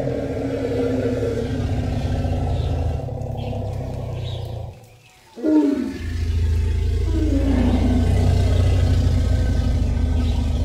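Two elephants vocalizing: a steady deep rumble runs under drawn-out calls that fall in pitch. It breaks off briefly about five seconds in, then a sudden loud call drops in pitch and the rumble resumes. These are calls of intense excitement at meeting, which the keepers take for joy, not aggression.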